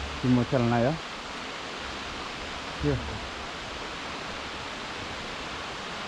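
Steady rush of flowing water at a dam: an even hiss that neither rises nor falls, with two short spoken words over it.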